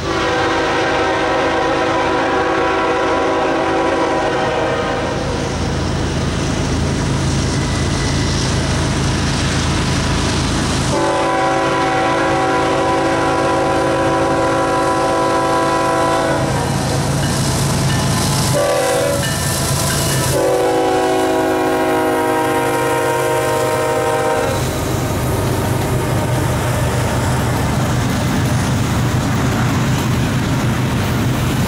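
Union Pacific GE ES44AC (C45ACCTE) locomotive's multi-chime air horn sounding two long blasts, a short one and a final long one, the standard grade-crossing signal, over the rumble of the approaching diesel locomotives. After the last blast the locomotives pass and the steel wheels of double-stack intermodal well cars roll by steadily.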